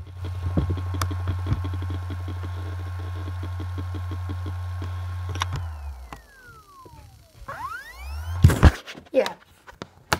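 Acer Aspire laptop's hard drive humming steadily, then spinning down with a falling whine and spinning back up with a rising whine, followed by a few loud clicks. The drive is randomly going to sleep, which the owner takes for a fault and cannot place between the drive, the motherboard and the EFI firmware.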